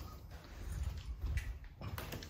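Faint footsteps and low handling rumble from a handheld phone as people walk through a corridor, with a few soft thuds.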